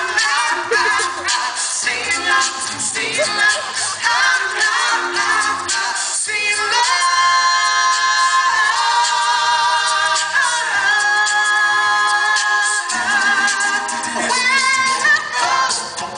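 All-male a cappella group singing live into handheld microphones, several voices in harmony. Busy, shifting vocal lines give way to a sustained held chord from about seven to thirteen seconds in, then the rhythmic singing resumes.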